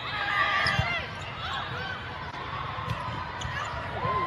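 Indoor volleyball game sound in a gym: a few sharp ball strikes over the steady chatter and shouts of players and spectators.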